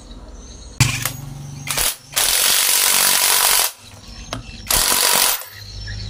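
Power tool run in loud bursts, driving the camshaft timing-sprocket bolts tight on a motorcycle engine: a short start about a second in, a longer run of about a second and a half, and a shorter burst near the end.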